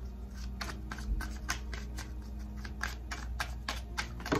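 Tarot deck being shuffled by hand: a run of quick, irregular card clicks and flicks, about four a second.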